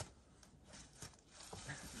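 Mostly quiet, with a sharp tap at the start and a few faint taps and scuffs about every half second: a climber's hands and rock shoes moving on a granite boulder.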